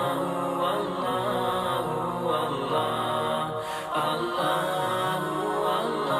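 Islamic devotional nasheed: layered voices chanting a slow, sustained melody.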